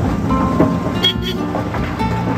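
Vehicle horns sounding in stopped traffic, with steady background music underneath.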